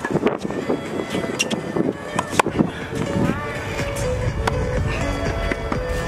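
Tennis balls struck by rackets in a practice rally: a handful of sharp hits a second or so apart, over background music and voices.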